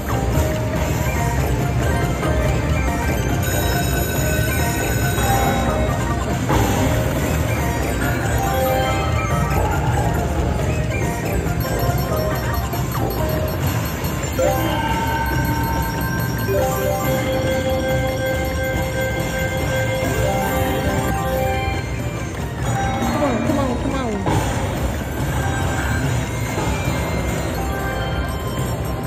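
Triple Fortune Dragon Unleashed slot machine playing its free-spin bonus music and reel sounds, with long held notes now and then, over a steady din of casino chatter.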